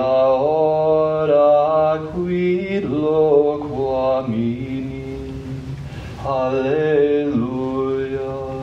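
Sung liturgical chant: long held notes that step up and down in pitch, with a short break about two seconds in and a quieter stretch before a louder phrase near the end.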